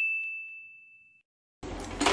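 A bell 'ding' sound effect from a subscribe-and-notification-bell animation: one high ringing tone that fades away over about a second. Near the end, a low hum of room sound cuts in.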